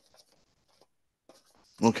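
A quiet room with a few faint, brief scratchy ticks, then a voice says "okay" near the end.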